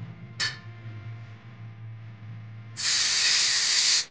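A low steady hum, then, near the end, a loud even hiss that lasts just over a second and stops abruptly.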